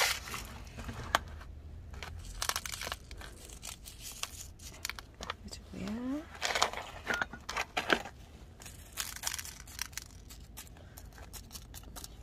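Gravelly top-dressing granules (zeolite) being stirred and scooped with tweezers and a plastic spoon in a plastic tub. The result is scattered small clicks and gritty rustling as the grit shifts and tinkles against the plastic.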